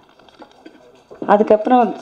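A short pause with faint room noise, then a woman's voice starts speaking into a microphone about a second in.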